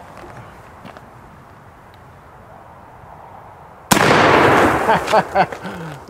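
A single shot from an original Remington Rolling Block rifle in .45-70, loaded with black powder and hard-cast lead, about four seconds in; the report is loud and its echo dies away over the next second or so.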